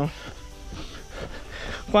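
Faint footsteps and movement noise of a runner on a dry dirt trail, in a pause between a man's words. A drawn-out spoken word ends at the start, and another begins near the end.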